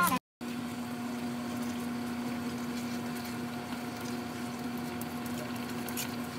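Steady electric hum with a low whine and fan hiss from the electric cooktop heating a pan of simmering coconut milk. It starts a moment in, after a brief gap.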